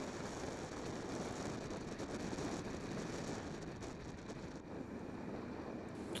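Steady rushing of wind and road noise from a moving vehicle, with no clear engine note, easing off slightly near the end.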